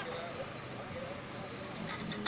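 Faint street ambience: road traffic with distant voices in a lull between amplified speech and music.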